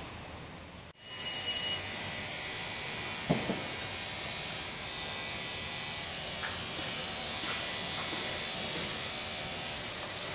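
Construction site background noise: a steady hum and hiss, with one sharp loud knock about three seconds in and a few fainter knocks later.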